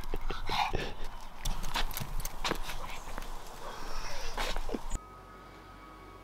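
A small fluffy dog jumping about and being petted on stone paving: clicks of claws and feet, rustling and handling, with a couple of short vocal sounds. About five seconds in it cuts off suddenly to a quiet room with faint steady tones.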